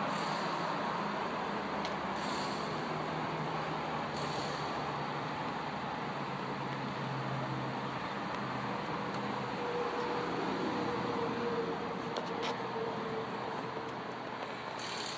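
Steady outdoor background noise with a low mechanical hum, and a faint steady tone that joins about two-thirds of the way through.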